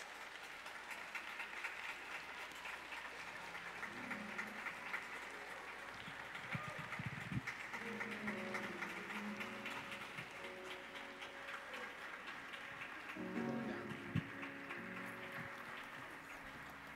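A congregation applauding steadily. About four seconds in, an instrument begins playing quiet held chords under the clapping.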